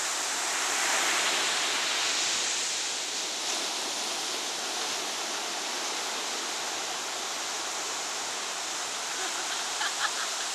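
Ocean surf washing onto a sandy beach, a steady rushing noise that swells slightly about a second in.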